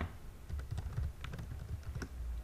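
Typing on a computer keyboard: a quick run of key presses, each a short click with a soft low thump.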